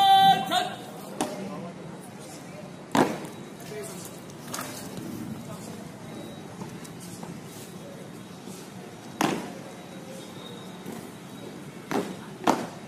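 A long, drawn-out shouted drill command ends about half a second in. It is followed by a few sharp single knocks spaced seconds apart, the loudest about 3 and 9 seconds in, over steady outdoor background noise.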